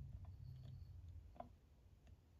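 Near silence with a faint low hum and a few faint light clicks, the clearest about one and a half seconds in, from the pen press and pen parts as the clip and cap are pressed onto the pen barrel.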